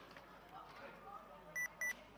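Two short electronic beeps in quick succession near the end, a steady high tone each, a quarter second apart and louder than anything else, over a faint murmur of voices.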